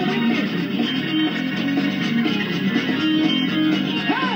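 Live gospel church band music led by guitar, a repeating riff of held, stepping notes.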